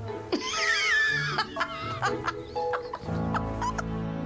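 A loud, high, wavering cry about a second and a half long, then laughter, over background music.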